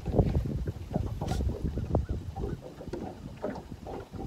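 Wind buffeting the microphone on an open boat, an uneven low rumble that rises and falls in gusts.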